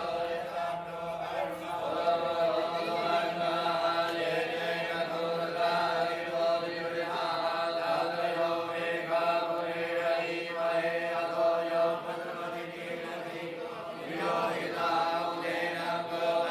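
Hindu priests reciting a devotional path of mantras in a continuous chant, one voice leading into a microphone, held on a steady pitch with a regular syllable rhythm.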